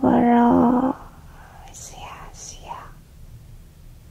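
A loud held note of steady pitch ends about a second in. Soft whispering in Japanese ASMR follows, breathy and close to the microphone.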